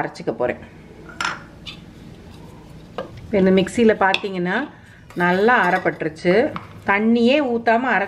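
A woman talking, with a knock and light clinks from a stainless-steel mixer-grinder jar and utensils being handled on a counter.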